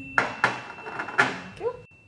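Ceramic dinner plates set down on a polished stone countertop: three short clunks within the first second and a half.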